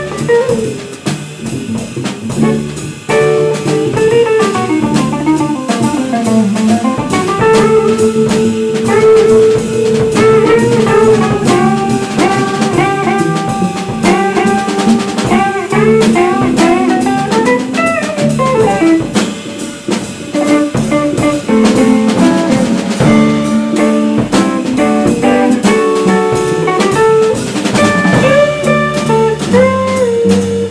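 A live jazz trio playing: a semi-hollow electric guitar carries the melodic line over plucked upright double bass and a drum kit with cymbals.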